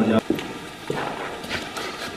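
A short spoken word, then a few soft, scattered knocks and shuffles of people moving about on a hard floor.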